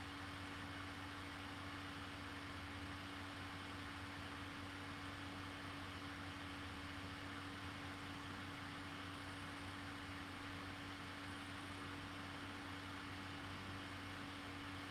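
Faint steady hum with an even hiss: room tone.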